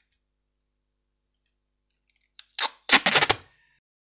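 Wide roll of clear adhesive tape being pulled out, unwinding with a short, loud crackling rip about three seconds in, after a quiet start and a brief first tug.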